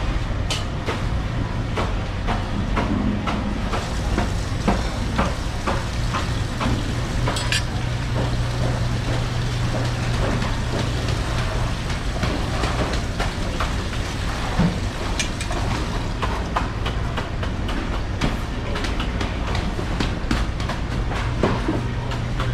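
Steady low hum and hiss of shop background noise, with scattered light clicks and taps.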